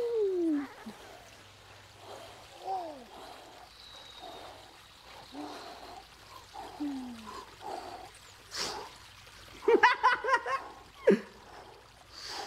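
Splashing, running water sound effect that marks the jump into a make-believe river. A few short, downward-sliding vocal cries are heard over it, louder near the end.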